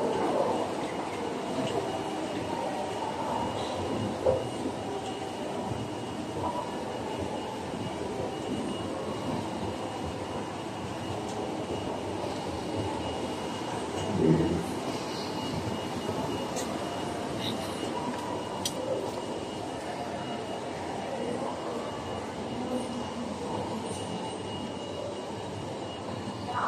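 Shopping-centre hall ambience: a steady even hum with a thin high whine running through it, and a faint murmur of distant activity. There are two dull thumps, the louder one about halfway through.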